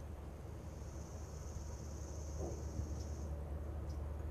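Outdoor ambience: a steady low rumble, with a faint, high, even trill lasting about two and a half seconds starting under a second in.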